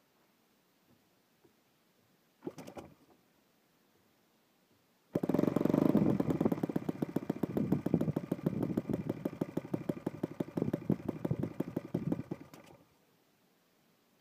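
Saito FA-72 single-cylinder four-stroke model engine, converted to spark ignition and running on gasoline, gives a short burst about two and a half seconds in. It then catches about five seconds in, runs for about seven seconds with each firing stroke audible, and cuts out abruptly. It stalls because the engine is still very cold.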